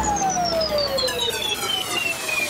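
A break in a pop song: one long synth tone gliding steadily downward like a siren, with the beat and bass dropped out.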